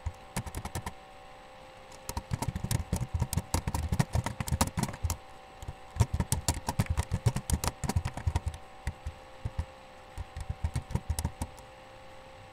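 Typing on a computer keyboard in quick, irregular spells with short pauses between them, over a faint steady electrical hum.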